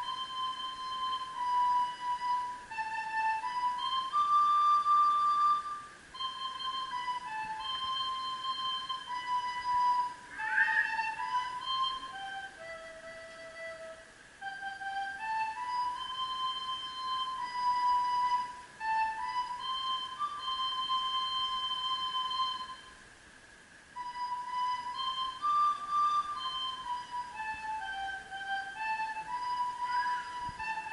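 Solo recorder playing a slow Christmas melody of held notes into a stage microphone, with a brief pause about three quarters of the way through.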